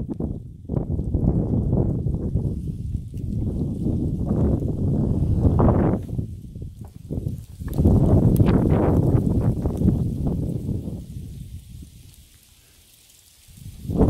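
Strong gusting wind buffeting the microphone: a heavy low rumble that surges and eases in gusts, dying down near the end.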